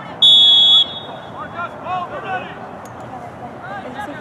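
A referee's whistle giving one short, loud blast of steady pitch near the start, with spectators' voices in the background.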